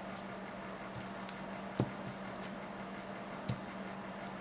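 A few faint, sharp clicks and taps from a glass nail polish bottle and its brush cap being handled, over a steady low hum.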